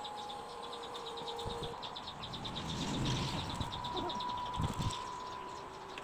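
Steady, rapid high-pitched chirping of an insect, about eight to ten even pulses a second without a break, with a few soft low thuds from hands kneading dough on a wooden board.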